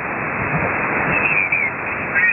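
Icom IC-R71E shortwave receiver's audio in a gap between voice transmissions: a steady hiss of band noise and static, cut off above about 3 kHz by the receiver's narrow filter.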